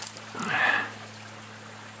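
Faint, steady trickle of a small spring-fed rivulet running over rocks, with a brief rush of noise about half a second in.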